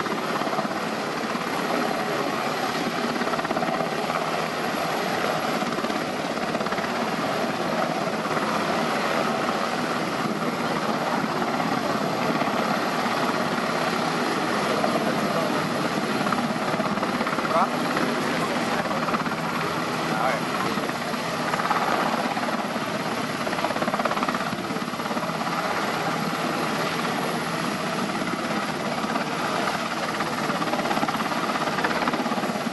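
NH90 Caiman military transport helicopter hovering low, its rotor and turbine noise loud and steady.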